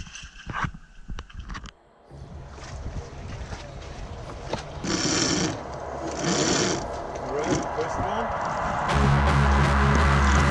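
Water splashing and slapping close to a boat's hull for the first couple of seconds. Then a rushing background noise that swells, with two short bursts of voices, and a music track with bass and guitar starts about a second before the end.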